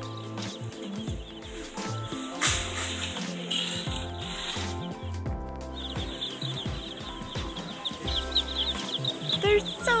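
Brood of baby chicks peeping: many short, high cheeps that grow dense from about halfway through, over steady background music.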